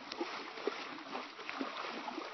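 Low, irregular splashing and sloshing of water around a man hand-fishing for catfish (noodling), with small scattered splashes.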